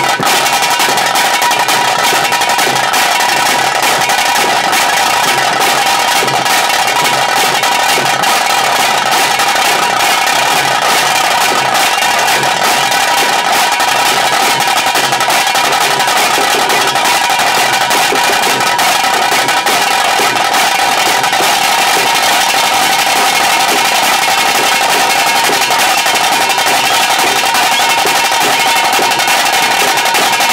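Tiger-dance band drums playing fast, unbroken rolls, loud and dense, with a steady high tone held over them.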